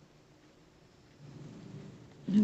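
Quiet room background with a faint low rumble that grows slightly from about halfway in.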